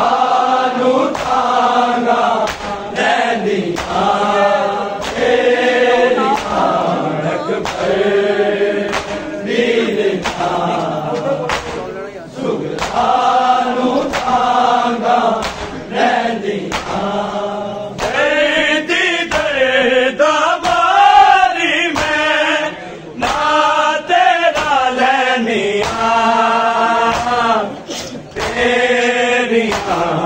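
A group of men chanting a Punjabi noha (Shia lament) in unison, with the rhythmic slaps of mourners beating their chests in matam running under the singing.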